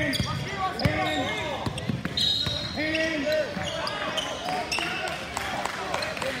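Voices calling out in a gym, with a basketball bouncing on the hardwood court and players' footsteps among them.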